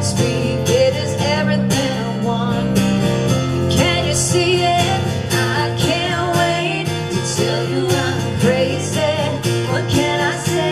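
Live pop-folk song: a strummed acoustic guitar and an electric keyboard accompanying female vocals, which grow more prominent about three and a half seconds in.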